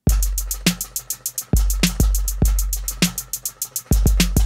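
Electronic drum beat finger-drummed live on an arcade-button MIDI controller driving software drums. It has rapid hi-hat ticks over deep booming kick drums with long bass tails, and snare hits between them.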